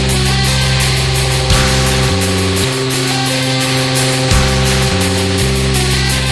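Heavy, guitar-driven rock music, close to metal: sustained low chords that change every second or so over steady, fast drum hits.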